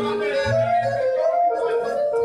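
Live lăutari band music: țambal (cimbalom), accordion and double bass, with a high melody line that slides and wavers in pitch. The bass drops out about a second in.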